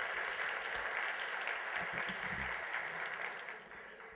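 Audience applauding steadily, dying away near the end.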